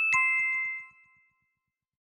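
Two quick bell-like chime notes, a higher one then a lower one about a quarter second apart, ringing out and fading within about a second: a sound effect laid over the finished photo-sticker picture.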